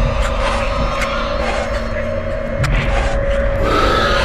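Music at a steady level, with a long held note and a heavy low rumble underneath.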